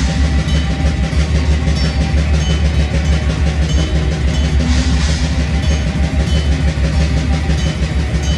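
Black metal band playing live: distorted electric guitars over fast, relentless drumming in a dense, loud wall of sound.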